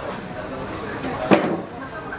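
Dough deep-frying in a wide pan of hot oil, with a steady sizzle, and one sharp metal clack a little over a second in as the tongs and perforated skimmer knock against the pan.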